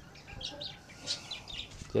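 A few short, high chirps from small birds, faint and scattered.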